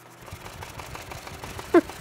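Air rushing from a running fan or blower onto a paper pinwheel, which flutters rapidly as it spins. A brief laugh comes near the end.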